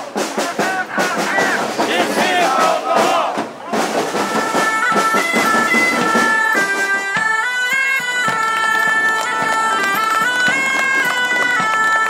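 Crowd voices for the first few seconds, then a folk bagpipe starts about four seconds in, playing a melody of held notes stepping up and down over a steady drone.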